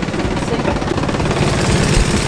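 Inboard marine diesel engine running, heard close up with a fast, even beat of firing pulses. It grows louder as its compartment cover under the companionway steps is lifted away.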